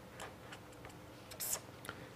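Marker pen writing on paper: a series of short strokes and taps, the loudest a brief scratch about a second and a half in.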